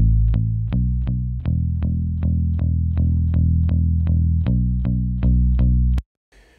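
Electric bass guitar part of steady plucked eighth notes, a little under three a second, with a few pitch changes, playing back through the Abbey Road EMI RS124 compressor plugin. It is heavily compressed, about 10 to 15 dB. The hold keeps the gain reduction at its peak from the previous pass, so the first note has no loud spike. The playback stops abruptly at the end.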